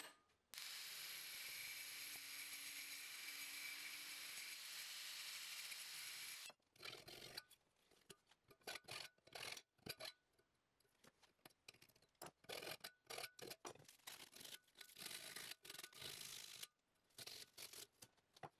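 An even, steady hiss for about six seconds, then a hand file rasping across the edge of a thin sheet-metal piece held in a bench vise, in many short separate strokes.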